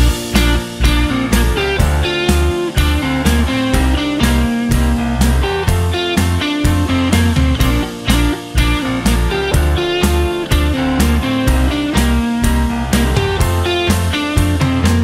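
Rock band playing an instrumental intro with no vocals: drum kit keeping a steady beat, bass guitar and electric guitar over keyboards.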